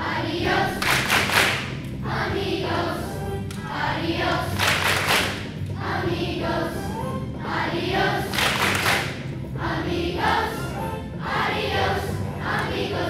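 A group of children singing together over accompaniment music, with a loud rushing burst about every four seconds.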